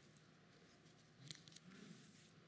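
Near silence broken by faint handling of paper sheets at a pulpit: a small click a little over a second in, then a brief soft rustle as a page is turned.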